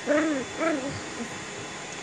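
English cocker spaniel puppy giving two short howl-like calls in the first second, each rising and then falling in pitch.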